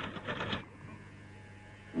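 Steady low electrical hum on an old television soundtrack, with a brief scratchy rustle in the first half second.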